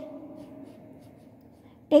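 Faint rubbing of a wax crayon on a textbook page as a leaf outline is coloured in. A woman's held voice fades out at the start, and a spoken word cuts in just before the end.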